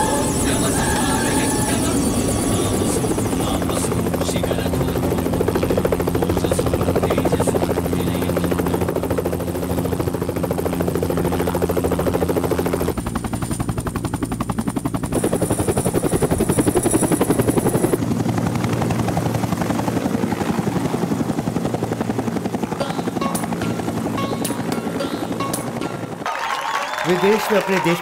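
A helicopter's rotor and engine run steadily through thick dust, mixed with film music. Near the end the sound cuts to a man's voice speaking.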